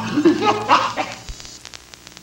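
A voice in short, rising-and-falling pulses fades out over the first second or so. A low steady hum with a few faint clicks is left.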